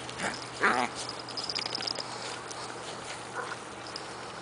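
Mini dachshund puppies play-fighting. One gives a short vocal sound in the first second, then a louder, wavering growl-like yip, and a brief softer one near the end. This is rough play, not a real fight.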